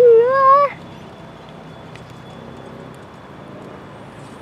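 A horse whinnying once, a loud wavering call that climbs in pitch and breaks off less than a second in.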